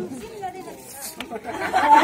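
Several people talking at once, a general crowd chatter, with voices growing louder near the end.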